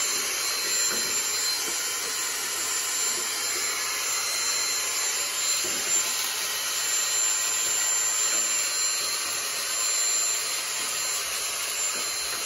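Dyson vacuum running steadily with a high whine, its extension wand and dusting tip sucking dust from the coils and compressor compartment at the back of a refrigerator.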